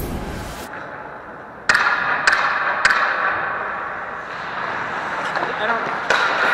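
Music fades out, then indoor ice hockey play starts up: three sharp clacks of sticks and puck about half a second apart, over echoing rink noise and players' voices.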